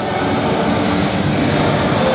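Steady background din of a large indoor exhibition hall: a broad, even rumble with faint distant voices under it.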